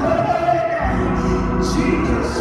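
Church praise team singing together with instrumental accompaniment, a sustained gospel-style vocal passage. A low bass part comes in a little under a second in.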